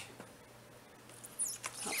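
Quiet room tone, then near the end a brief high squeak that falls in pitch, with a few light clicks.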